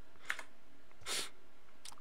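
Two faint computer mouse clicks, one just after the start and one near the end, with a short hiss between them, over a steady low room noise.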